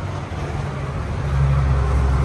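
A motor vehicle's engine running, a low steady hum that grows louder about a second in.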